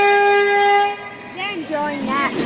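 A vehicle horn held in one long steady blast that cuts off about a second in.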